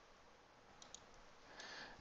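Near silence: room tone with a few faint computer-mouse clicks about a second in, as a menu item is picked.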